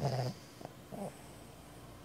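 A sleeping pig's drawn-out snore ends a fraction of a second in. Two short, softer sounds follow, the second falling in pitch.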